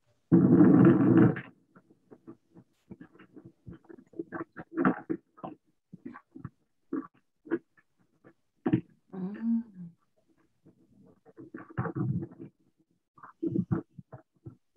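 Soundtrack of a phone video of a distant coal-mine blast, played back over a video call: a loud, harsh noise lasting about a second just after the start, then scattered short, fainter sounds. None of it is the sound of the blast itself.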